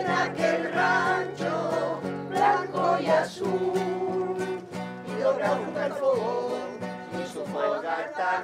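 A small amateur choir singing to a strummed acoustic guitar.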